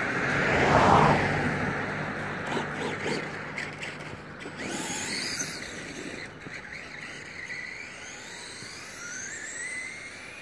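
A loud rush of noise swells and fades about a second in. Then the Traxxas Rustler VXL radio-controlled truck's brushless electric motor whines, climbing steadily in pitch as the truck accelerates over the last few seconds.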